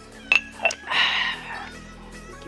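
Two light clinks from a mug in quick succession, then a short breathy sip from it lasting under a second.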